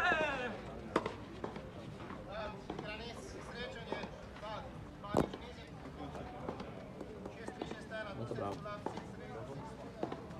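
Tennis ball struck by a racquet on a clay court: two sharp hits, about a second in and about five seconds in, with voices talking in the background throughout.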